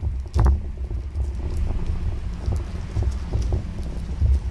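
A small plastic-wrapped cardboard box handled in the hands, giving light scattered clicks and rustles, over a steady low rumble.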